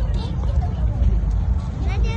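Outdoor ambience: faint voices of people talking in the distance over a heavy, uneven low rumble.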